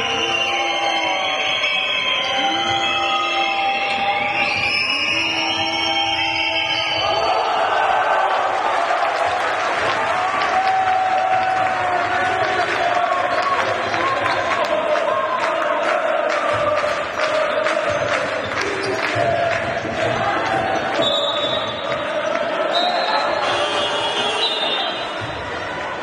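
Basketball arena during play: a crowd chanting and cheering over music, with a basketball bouncing on the hardwood floor. Pitched, gliding sounds fill the first seven seconds, then a dense crowd noise with many short knocks takes over.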